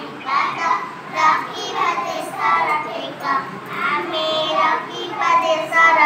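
A group of young girls singing a song in Odia together, voices carried on a microphone.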